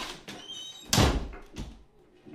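A door shutting with a single loud thud about a second in, then a fainter knock just after.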